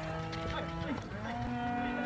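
Cattle mooing: two long, steady calls one after the other, the first ending about a second in and a slightly higher one following straight after.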